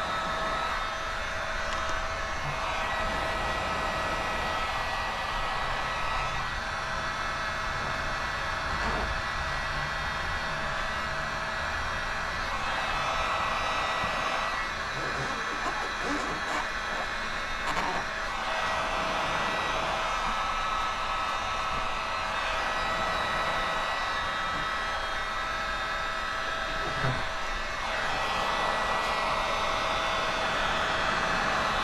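Heat gun blowing steadily, a constant airy hiss with a thin motor whine, warming paint protection film so it turns tacky and stretches around the bumper's corners.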